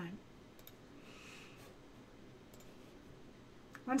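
A few faint, separate clicks of computer keys being pressed, in small groups about half a second in, around two and a half seconds in and just before the end.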